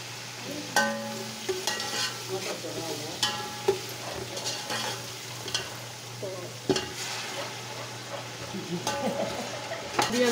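Sliced onions frying in hot oil in a steel pot, sizzling steadily, while a metal spatula stirs and scrapes through them. A few sharp clinks of the spatula against the pot ring out, about a second in, near four seconds and near seven seconds.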